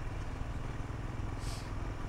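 Royal Enfield Himalayan's single-cylinder engine running steadily while the motorcycle is ridden, with a brief hiss about a second and a half in.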